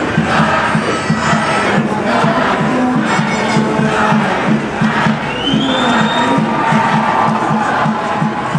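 Crowd noise of a street demonstration: many voices shouting and cheering, over music with a steady rhythmic beat.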